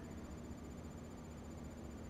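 Quiet, steady room tone: a low electrical hum with faint hiss and no distinct sounds.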